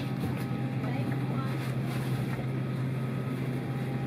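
Cabin air-conditioning of a parked Airbus A320 running with a steady low hum, with a few faint clicks over it.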